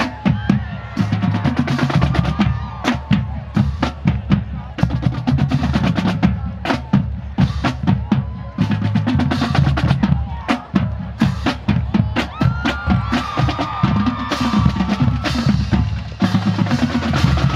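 Marching band drumline playing a driving groove on snare drums and pitched bass drums, dense rhythmic strikes with a heavy low pulse.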